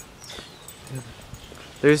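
Faint footsteps and outdoor ambience while walking on a paved path, with a man's voice starting near the end.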